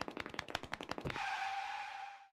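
Sound effects on a music video's soundtrack: a rapid run of sharp clicks, about a dozen a second, stopping about a second in, then a steady hiss with a single held tone.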